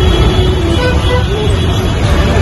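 Steady rumble of road traffic from passing vehicles, with people's voices in the background.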